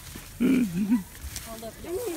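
A person's voice letting out a short, loud, wavering growl-like cry about half a second in, then quieter voices.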